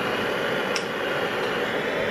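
Butane jet torch lighter burning: a steady, even hiss of its blue jet flame.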